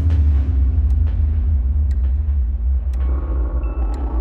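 Deep, loud rumbling drone of horror-trailer sound design, with a faint hum that slowly sinks in pitch and a few soft ticks. Thin, high sustained tones join about three seconds in.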